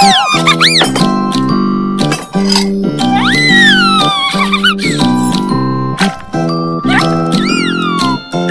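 Bouncy children's cartoon music, a repeating pattern of chords, with high squeaky sounds that slide up and down laid over it: a short one at the start, a longer wavering one from about three to five seconds in, and another near the end.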